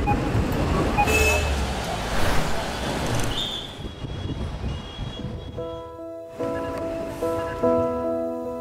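City street sound of traffic and crowd bustle for the first five seconds or so, then soft piano music comes in with held chords and single notes.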